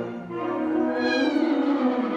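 A concert band is playing sustained brass and wind chords. In the second half a pitched glide slides downward.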